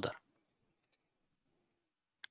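Two faint, quick clicks of a computer mouse about a second in, otherwise near silence; a spoken word trails off at the very start.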